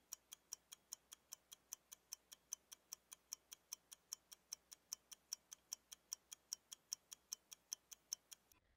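Faint ticking-clock sound effect counting down a quiz timer, about five evenly spaced ticks a second.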